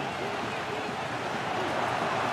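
Match sound of a televised football game: a steady even hiss with faint, short shouts of distant voices and no crowd noise.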